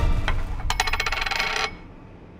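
A quick run of bright, ringing clinks and tinkles lasting about a second, then stopping abruptly.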